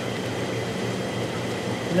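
Steady hum and water rush of a reef aquarium's pumps and circulating water, with faint high steady tones over it.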